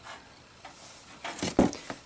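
Mostly quiet, then a few brief rubbing and light knocking sounds about a second and a half in, from handling an old metal toggle-switch box.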